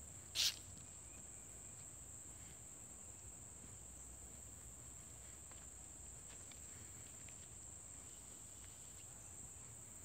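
A steady, high-pitched chorus of insects buzzing in woodland, unchanging throughout. A single short scuff or rustle about half a second in is the loudest moment.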